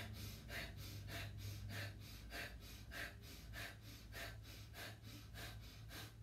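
A man's short, sharp exhalations sniffed out through the nose in a steady rhythm of about three a second, one with each downward bounce of a squatting yoga breathing exercise.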